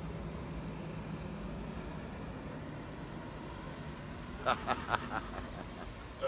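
Steady outdoor city background noise, with a man laughing in a few short bursts about four and a half seconds in.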